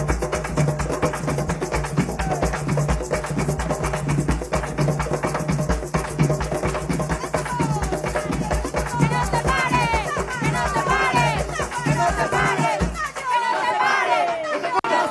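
Afro-Venezuelan San Juan drums (tambores de San Juan) played in a fast, dense rhythm with sticks. Sung voices come in over the drumming in the second half, and the drums drop out near the end, leaving the voices.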